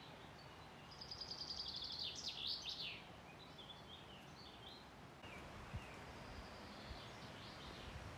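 A songbird singing: a quick run of repeated high notes ending in a few falling notes, followed by a few scattered short chirps. Underneath is a faint, steady outdoor hiss.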